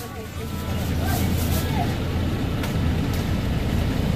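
Motor vehicle engine running with a steady low hum, growing louder over the first second and then holding.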